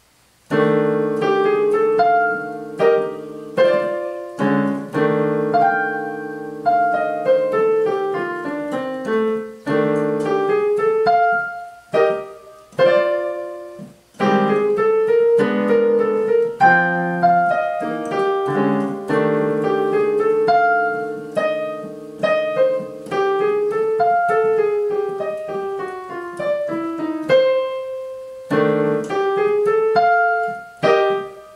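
Technics digital piano played with both hands: held chords in the lower register under a quick melody line of separate notes. It starts about half a second in, with a few brief breaks between phrases.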